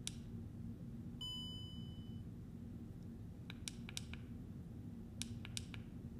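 A single steady electronic beep about a second long, then light plastic clicks in two quick clusters from handling a folded DJI Osmo Mobile 3 phone gimbal, over a low steady hum.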